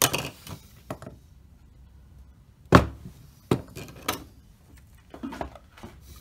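A series of short, sharp knocks and clacks from the parts of a car's heater control panel being handled and set down on a workbench; the loudest knock comes nearly three seconds in, with a small cluster of clacks near the end.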